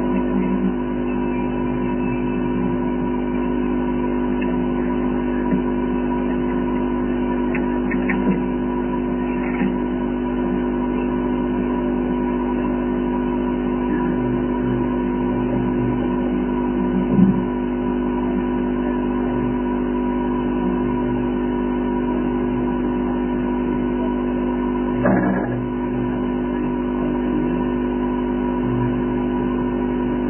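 A steady hum made of several held tones, with a couple of brief faint knocks, one a little past the middle and one near the end.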